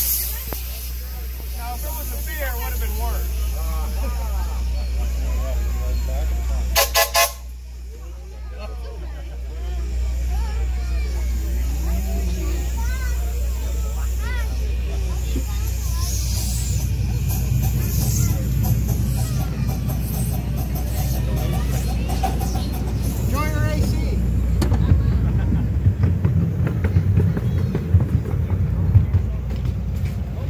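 Crowd voices, then about seven seconds in a train whistle gives three short toots. After that the low rumble of the small open ride car rolling along the track grows, with a few sharp clanks near the end.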